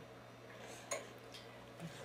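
Quiet room tone with a steady low hum and a single faint click about a second in.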